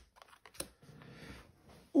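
Trading cards being handled and set down on a playmat: a soft tap about half a second in, then faint card rustling.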